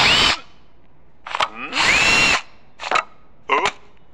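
Cartoon sound effect of a cordless drill driving screws into wooden boards: two short whirring bursts, one right at the start and a longer one about two seconds in, each with a whine that rises in pitch. Brief clicks sound between them.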